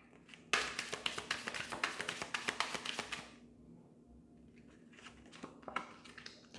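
Oracle cards being shuffled by hand: a rapid, dense run of card clicks and flicks for about three seconds. Near the end come a few light taps as a card is drawn.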